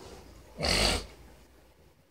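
A dog blows one short, sharp breath out through its nose, lasting under half a second.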